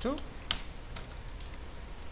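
Keystrokes on a computer keyboard: one sharp key click about half a second in, then a few fainter taps.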